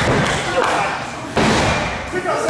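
Two heavy thuds from a wrestling ring, the boards under the canvas booming as a body hits the mat: one at the start and another just under a second and a half in, with voices talking in the background.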